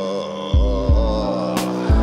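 Music: held, layered drone-like chords with three deep low beats, about half a second in, near one second, and near the end.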